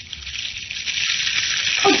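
Radio-drama sound effect of a blazing house fire, a dense crackling hiss that swells louder over the first second or so. A woman's voice cries out near the end.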